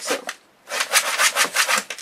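Rapid scratchy rubbing, a quick run of rasping strokes about eight a second, starting after a short pause near the beginning.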